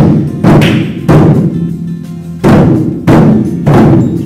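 Large taiko-style barrel drums struck together with sticks by a group, in unison. Six loud beats about half a second apart, with a pause of about a second after the third, each beat dying away quickly.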